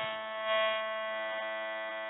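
A sustained drone of many steady overtones from the background music, swelling briefly about half a second in and then slowly fading.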